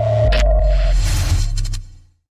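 Electronic logo sting: a held, sonar-like tone that stops about a second in, a deep low boom that comes in a quarter of a second in, and a hissing swish, all fading out near the end.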